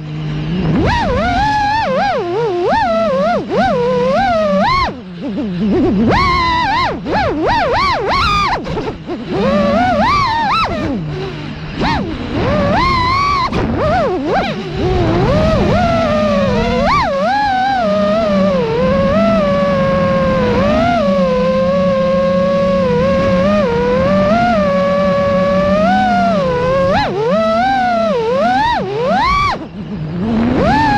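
FPV racing quadcopter's brushless motors and propellers whining, the pitch swooping up and down with the throttle, with a few short dips where the throttle is cut and a steadier stretch in the second half.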